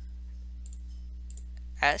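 A few faint computer mouse clicks, in two small groups about a second apart, over a steady low electrical hum; a man's voice starts just before the end.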